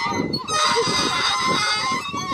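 Rusty playground merry-go-round squealing as it turns, its dry pivot giving a held high squeal with a short break about half a second in.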